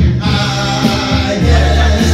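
Classic soul music performed live: singing over instrumental accompaniment with a prominent, steady bass line.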